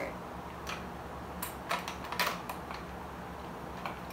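A handful of sharp clicks and light knocks at uneven intervals as the metal beaters are pushed into an electric hand mixer and the mixer is handled, over a low steady hum.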